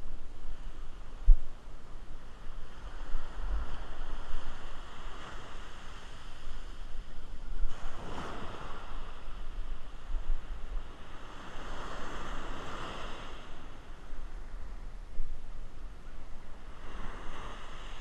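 Ocean surf washing up a beach, swelling and fading in waves about every four seconds, with wind buffeting the microphone.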